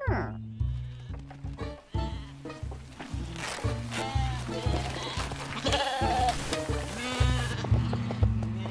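Cartoon sheep bleating several times over bouncy background music with a pulsing bass line. The music opens with a quick falling glide.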